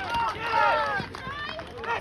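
Several voices shouting and cheering in celebration of a goal just scored, loudest in the first second and then easing off.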